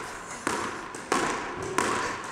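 Warmed-up squash ball being volleyed off a racket against the front wall in a steady rhythm: three sharp strikes about two-thirds of a second apart, each ringing briefly in the court.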